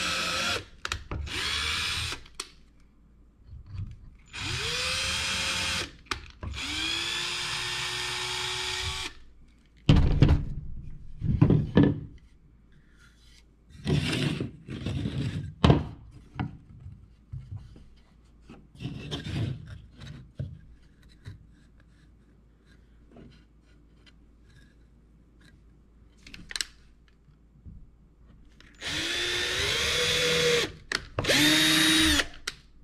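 Cordless drill run in several short bursts into pine boards during the first nine seconds, its motor pitch rising as each burst starts. Wooden boards then knock and clatter on the table, and the drill starts again near the end.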